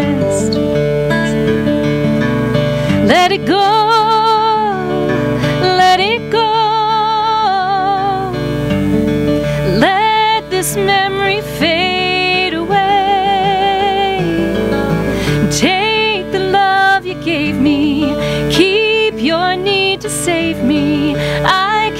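A woman singing a slow song with marked vibrato on long held notes, accompanied by an acoustic guitar.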